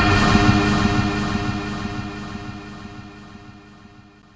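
Cinematic logo-sting sound effect: a deep rumbling hit with a ringing chord of held tones, loud at first and fading out slowly over about four seconds.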